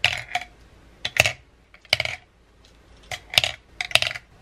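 Nail art brushes dropped one at a time into a clear acrylic brush holder, clacking against the plastic and each other: about half a dozen sharp, irregularly spaced clicks.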